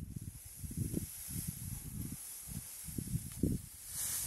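Dry hay rustling and swishing as a pitchfork pulls it from a haystack, over irregular low buffeting of wind on the microphone.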